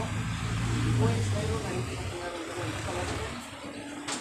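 A motor vehicle passing on the street: a low engine rumble that is loudest about a second in and then fades, over faint background voices.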